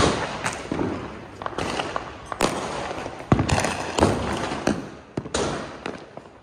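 Firecrackers going off: a rapid, uneven series of sharp bangs and crackling pops that starts suddenly, with the loudest crack about three and a half seconds in.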